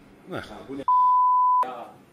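A single steady high-pitched censor bleep, just under a second long, dropped over a man's speech: his voice cuts off abruptly as the bleep starts and resumes as it ends.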